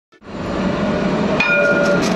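City tram running past: a steady noise with a low hum, joined by a few held tones about one and a half seconds in.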